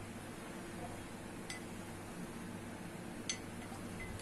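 Two light clinks of kitchenware, the second louder, over a steady low hum in the room.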